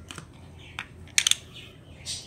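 A quick run of sharp clicks a little over a second in, with a few fainter ticks before it: small hard parts being handled, as the Prep & Etch bottle is readied for pouring.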